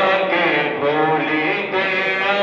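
A man singing a Bengali Islamic gojol in long held notes.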